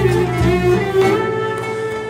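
Turkish classical music ensemble playing a short instrumental passage in makam Bayati: a sustained, wavering melody over plucked strings and a bass line.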